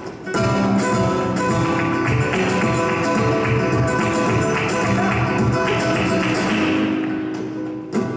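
Live flamenco music: two Spanish guitars playing together with cajón and hand-clapping (palmas) percussion. It eases off in loudness near the end.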